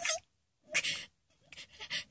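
Quick breathy panting: short huffs of breath, one at the start, another just under a second in, then a faster run near the end.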